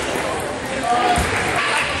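Table tennis balls bouncing, with a low thump about a second in, over a steady murmur of voices in a large, echoing sports hall.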